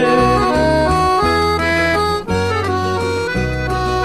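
Sertanejo music in an instrumental passage between sung lines: an accordion plays a stepping melody over sustained bass notes.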